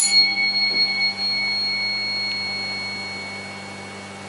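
A clinical tuning fork struck once and left ringing, a clear high tone that fades slowly over about three seconds. It is set vibrating to test vibration sense at the shoulder.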